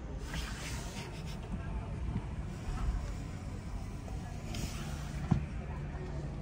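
Indoor exhibition-hall background: a steady low rumble with indistinct voices, heard from inside a parked car's cabin, with a single sharp click about five seconds in.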